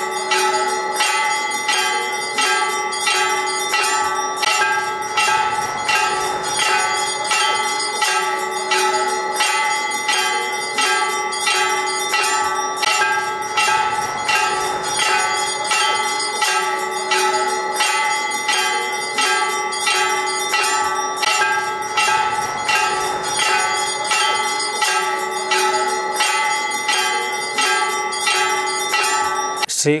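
A bell rung over and over at a steady pace, about two strikes a second, its ringing tone carrying on between strikes.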